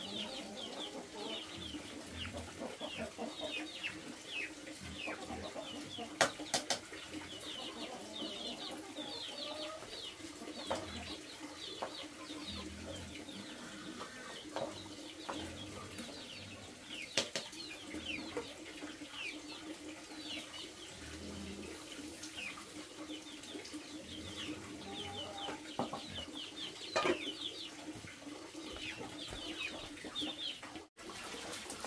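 Birds chirping throughout in many short, quick downward chirps, over a steady low hum, with a few sharp knocks about six seconds in, mid-way and near the end.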